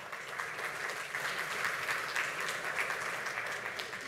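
Audience applauding: many people clapping steadily, dying away near the end.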